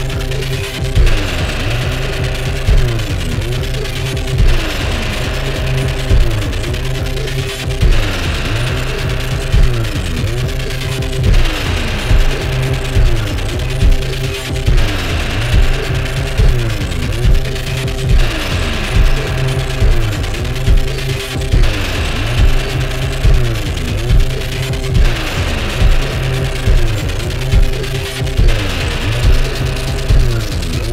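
Live improvised electronic music played on hardware synthesizers and drum machines: a steady low bass under a heavy beat about once a second. A synth line slides up and down in pitch, the pattern looping about every three and a half seconds.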